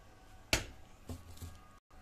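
A metal spoon knocking once, sharply, against the pot as ground crayfish is tipped into the soup, followed by a fainter soft knock; the sound drops out completely for a moment near the end.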